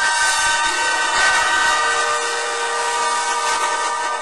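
A loud, sustained drone of several steady overlapping tones over a hiss, used as an eerie horror-drama sound effect.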